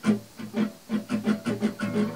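Acoustic guitar being strummed: one full stroke at the start, then a run of quicker, lighter strokes, about four or five a second, with the strings ringing between them.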